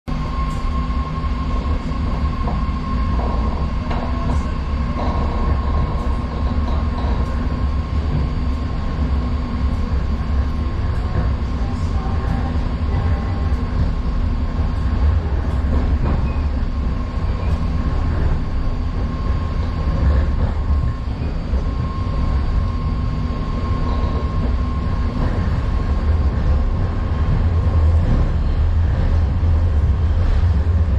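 A BART Fleet of the Future rapid-transit car running on the rails, heard from inside the car: a steady low rumble with a thin steady whine above it and a few scattered clicks.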